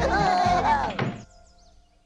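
Cartoon characters laughing over music, cut off by a thunk a little after a second in; the sound then falls to near silence.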